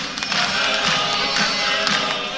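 An ensemble of men singing a traditional Georgian song in parts, with held, slowly shifting notes, accompanying a tiered round dance.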